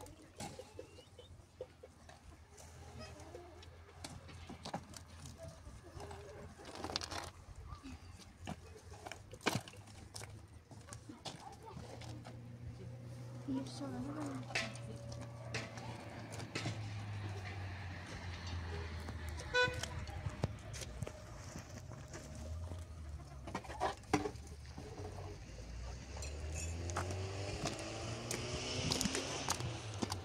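Hollow concrete blocks being set on a wall: scattered sharp knocks and scrapes. Faint voices and a low hum run underneath, the hum growing louder in the second half.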